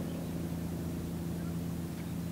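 Bulk carrier's engines running as the ship passes, a steady low drone of several held tones that does not change.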